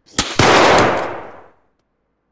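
Pistol gunfire: a sharp crack, then a loud blast that dies away over about a second.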